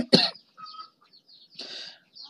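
A man's short cough, like a throat-clear, at the very start, then a soft intake of breath near the end.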